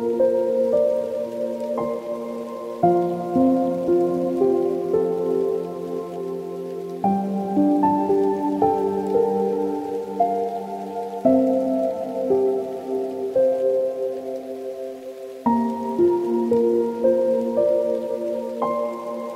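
Slow solo piano music: sustained chords and melody notes, with a new chord struck about every four seconds.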